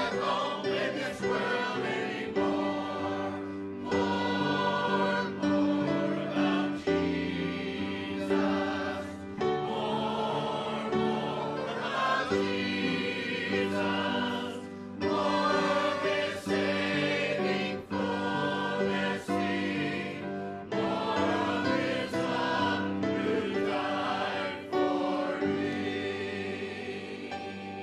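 Church choir singing a gospel hymn in sustained chords that change every second or two.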